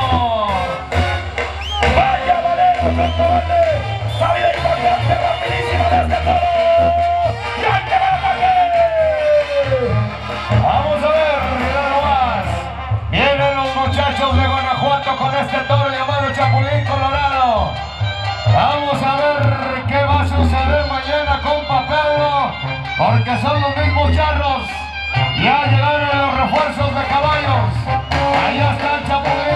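Mexican brass band (banda) music with a tuba bass line, continuing throughout.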